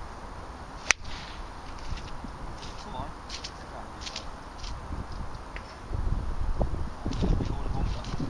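A golf iron striking the ball on a fairway shot: one sharp crack about a second in. Low rumbling noise follows near the end.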